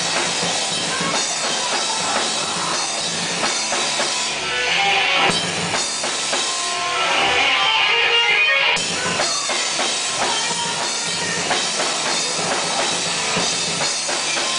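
Live rock band playing loudly on drum kit and electric guitars. The music grows brighter and a little louder in two passages around the middle.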